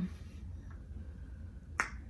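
A single sharp click near the end, over a faint, steady low hum.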